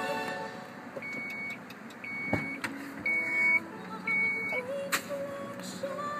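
A car's warning chime beeping four times, about once a second, each a short high tone, with a thump and a click among the beeps. Near the end, music with singing starts again on a held note.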